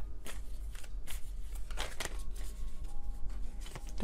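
A tarot deck being shuffled by hand: a run of quick, irregular card clicks and slides.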